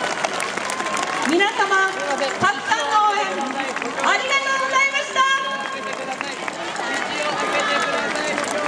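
Voices calling out and speaking over the hubbub of a street crowd, with one long held call about four seconds in.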